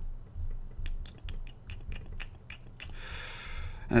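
A run of light computer clicks, about seven a second for two seconds, as a help window is scrolled. Near the end comes a soft breath.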